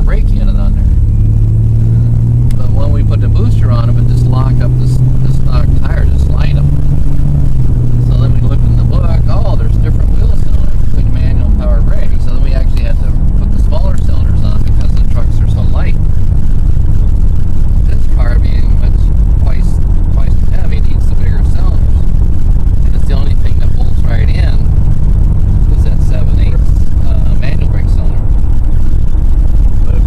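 Turbocharged Buick T-Type V6 engine and road rumble heard inside the moving car, the engine note rising steadily over the first ten seconds or so as the car accelerates. Indistinct voices talk over it throughout.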